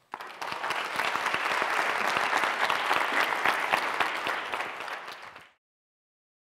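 Audience applauding: dense, steady clapping that starts right away and cuts off suddenly about five and a half seconds in.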